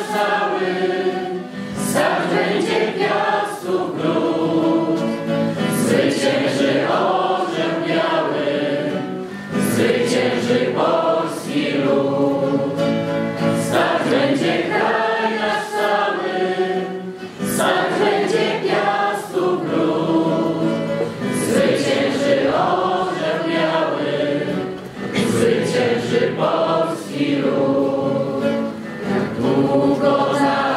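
A group of voices singing a Polish patriotic song together in chorus.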